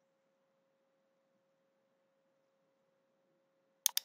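Near silence with a faint steady tone, then a computer mouse clicked twice in quick succession near the end.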